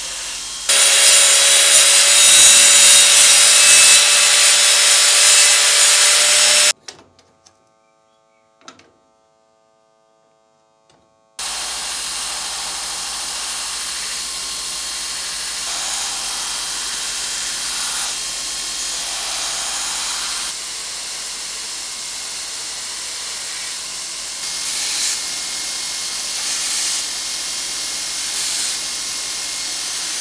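Belt grinder sanding a bubinga wood sword handle. There is loud sanding for about six seconds, then a few seconds of near silence with a couple of small clicks, then the grinder runs steadily with brief surges as the wood is pressed to the belt.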